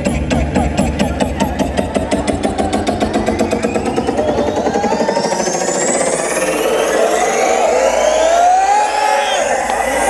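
Electronic dance music playing loud in a build-up. A drum roll speeds up, the bass cuts out about halfway, and rising sweeps climb toward the drop.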